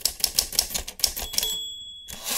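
Typewriter keys clacking in a fast run, then the typewriter's bell dings as the typing stops, about a second and a half in.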